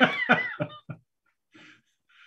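A man laughing in short, choppy bursts that die away about a second in.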